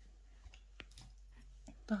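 A few faint, short clicks and taps from hands handling a crocheted cotton lace piece, with quiet room tone between them.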